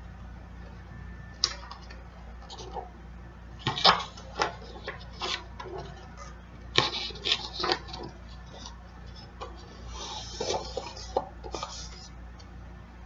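A paper lyric sheet being handled: rustling and scattered light taps and knocks, with a longer rustle near the end, over a low steady hum.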